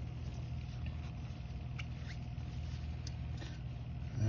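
Light handling noise of baseball cards being flipped and slid between gloved hands, with a few faint ticks as cards meet, over a steady low background hum.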